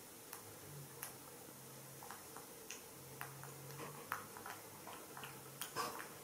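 Baby monkey's mouth smacking and sucking on a man's bare chest: soft, irregular wet clicks, a few a second, with a louder cluster near the end.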